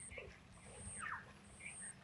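Faint bird chirps, short calls falling in pitch, about three times, over a high pulsing buzz that comes and goes about once a second.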